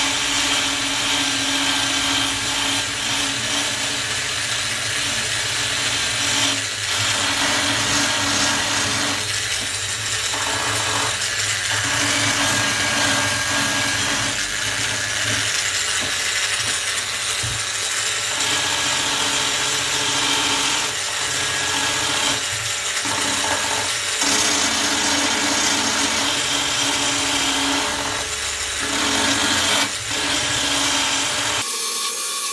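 Proxxon BS/E mini belt sander running continuously, its narrow abrasive belt grinding against a metal corner fitting of the trunk. Its hum drops out briefly several times as the tool is pressed and moved along the edge.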